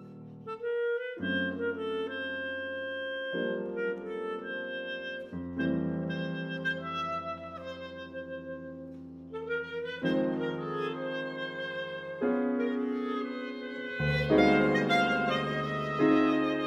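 Clarinet and Steinway grand piano playing contemporary chamber music: held clarinet notes over piano chords that shift every two seconds or so, growing fuller and louder near the end.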